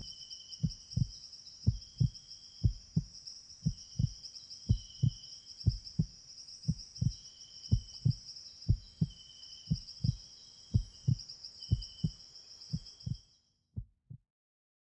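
Heartbeat sound, a double lub-dub thump about once a second, over a steady high buzz with short intermittent chirps; it all stops just before the end.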